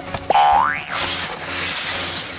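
A short, rising cartoon 'boing' sound effect about half a second in, followed by a second-long hiss of cardboard rubbing as a box is slid open out of its sleeve.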